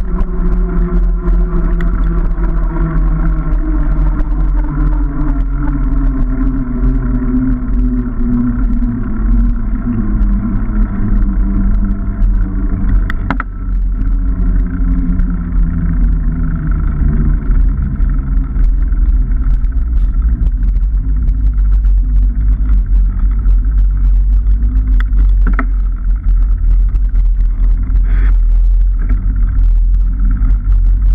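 Heavy wind rumble on a bike-mounted camera's microphone with road noise from a bicycle's knobbly tyre rolling on tarmac. A hum falls in pitch over the first ten seconds or so as the bike slows, and there are a few sharp clicks and knocks from the bike over bumps.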